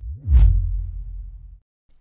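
Edited-in whoosh transition sound effect: a short swish about a third of a second in, over a deep boom that fades away over about a second.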